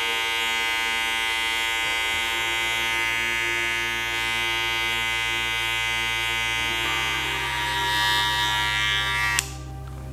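Electric hair clipper running steadily with an even hum, used over a comb to cut the sideburns short. The hum stops suddenly near the end as the clipper is switched off.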